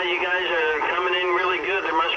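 A man's voice received over a CB radio in lower sideband, heard from the Anytone AT-6666's speaker; the voice sounds thin, with no deep or high tones.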